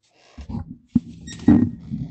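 Handling noise on a headset microphone: rustling and scraping with a low rumble, broken by two sharp knocks, as the headset is fitted and adjusted.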